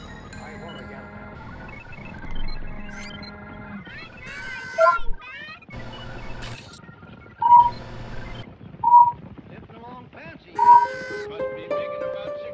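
A soft melodic music score with held notes, then an animated robot's synthesized electronic voice: several short bursts of warbling, chirping beeps from about four seconds in.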